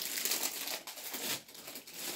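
Close rustling and crinkling right at the phone's microphone, like cloth brushing against it, lasting through the two seconds and dying away just after.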